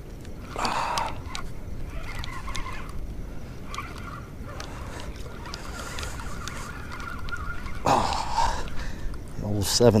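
Handling noise from an angler fighting a hooked snook on a spinning rod and reel: scattered faint clicks and rubbing over a steady low rumble. There is a faint steady whine for a few seconds in the middle, a short rough burst about eight seconds in, and a man's voice starts right at the end.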